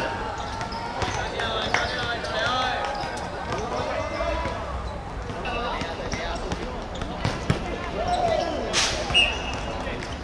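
Players' voices calling out across an outdoor futsal court, with a couple of sharp football thuds. A short, shrill referee's whistle blast near the end signals the free kick.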